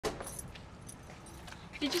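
Keys jingling at a front door lock and the door being opened: a sharp click at the start, then light metallic jingles. A voice begins near the end.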